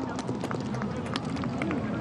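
Field-level sound of a football match with no crowd: players' voices calling faintly under many short, sharp clicks and thumps of footfalls and ball strikes on the pitch.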